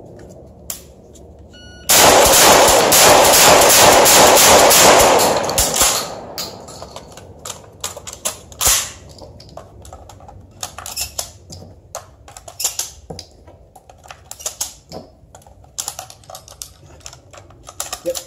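Kel-Tec KSG 12-gauge bullpup pump shotgun fired in a rapid, very loud string for about three and a half seconds, starting about two seconds in. It is followed by irregular clicks and clacks of shells being pushed by hand into its magazine tubes during a hurried reload.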